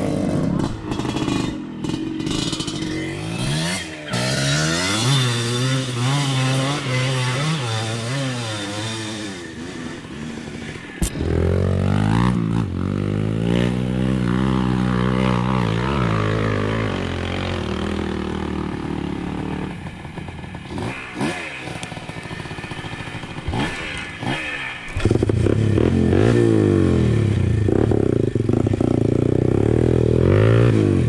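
Dirt bike engine running at low speed, its pitch rising and falling with the throttle, with a sharp knock about eleven seconds in. From about twenty-five seconds in it runs louder and steadier.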